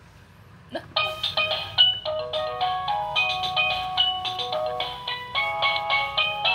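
Electronic baby toy playing a simple beeping melody, starting with a click about a second in and running on as a quick tune of short, evenly pitched notes.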